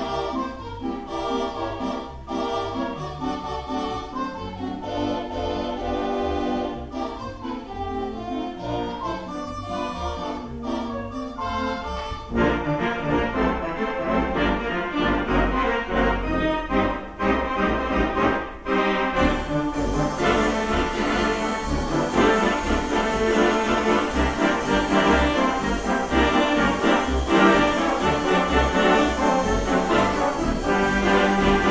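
Wurlitzer theatre organ playing an upbeat 1920s popular song. It swells louder and fuller about twelve seconds in, and grows brighter still about seven seconds later.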